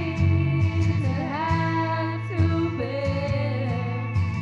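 A woman singing karaoke into a microphone over a recorded backing track.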